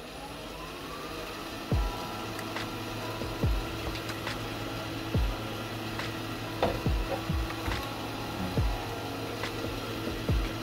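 Wood lathe motor spinning up, its whine rising over about the first second, then running steadily. Background music with a low beat plays over it.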